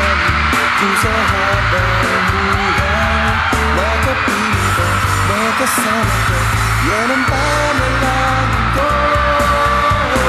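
A man singing live into a handheld microphone over a backing track with a steady bass pulse.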